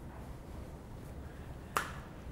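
Quiet room tone with a single short, sharp click near the end.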